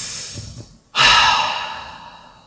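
A person's breath close to the microphone. One breath fades out, then a sharper breath comes suddenly about a second in and trails off.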